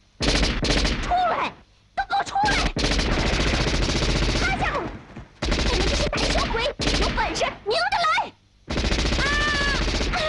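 Four long bursts of rapid automatic gunfire from submachine guns, with brief gaps between them. Voices yell over the shooting, loudest near the end.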